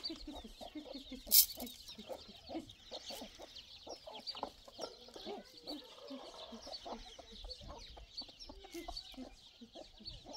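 Domestic chickens clucking continually as they are fed, with a dense layer of high chirping above them throughout. A single short, sharp noise about a second and a half in is the loudest thing.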